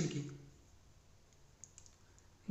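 A pen on notebook paper, making a few faint short clicks and scratches in the second half as it begins to write.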